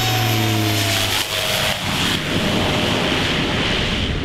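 Crop-duster plane making a low pass, its engine and propeller drone sliding down in pitch as it goes by, followed by a steady rushing noise.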